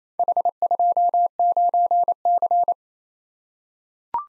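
Morse code tone at a single steady pitch keying 'H 2 9 C' (four dits; dit-dit-dah-dah-dah; dah-dah-dah-dah-dit; dah-dit-dah-dit) at 28 words per minute. It is the repeat sending of the combination and stops after about two and a half seconds.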